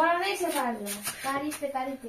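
A woman speaking, her voice getting quieter toward the end.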